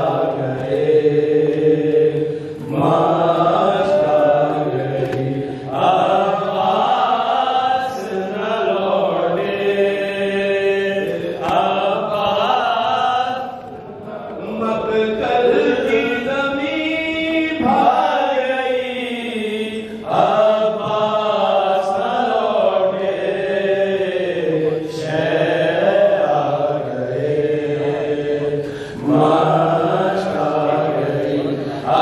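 Chanted recitation of a Shia mourning kalam (nauha): voice carried in long melodic phrases, each phrase ending in a short dip before the next.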